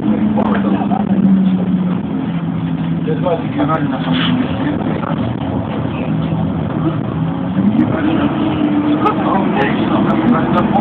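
Bus engine running under way, heard from inside the cabin on a phone. Its note holds fairly steady, sags a little, then rises from about three-quarters of the way in as the bus picks up speed.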